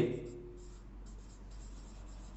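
Dry-erase marker writing on a whiteboard, faint strokes over a steady low electrical hum.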